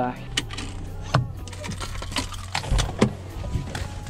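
Scattered clicks and knocks, about half a dozen, over a low steady hum, with faint voices in the background.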